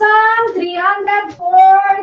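A woman's voice calling out in a high, sing-song way, with long drawn-out vowels and no clear words.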